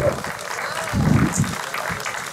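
Audience applauding, with a brief voice about a second in.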